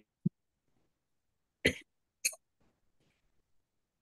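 A person coughing twice, two short coughs about half a second apart, less than two seconds in.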